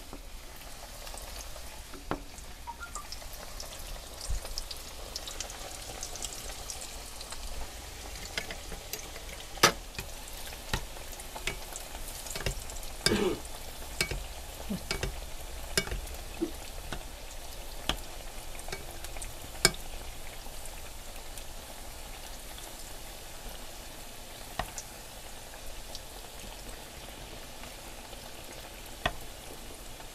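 Karakuş dough pastries deep-frying in a pan of hot oil, giving a steady sizzle. A metal spoon clicks sharply against the pan a dozen or so times as hot oil is ladled over the pastries to make them puff up.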